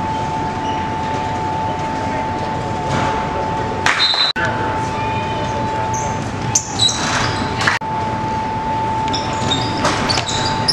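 Basketball gym ambience: spectators' chatter with a steady hum. From about four seconds in, a few brief high squeaks, typical of sneakers on the court, and sharp knocks.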